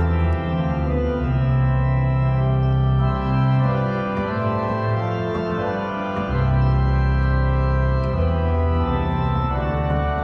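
Church organ played on manuals and pedal board: slow, sustained chords over a deep bass line held on the pedals, the chords changing every second or two, with a short break between phrases about six seconds in.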